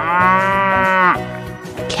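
A cow mooing once: a long, pitched moo lasting about a second that drops in pitch as it ends.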